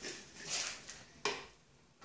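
Quiet handling of kitchen containers and utensils while measuring out an ingredient: a short scrape or rustle, then a single sharp tap about a second and a quarter in.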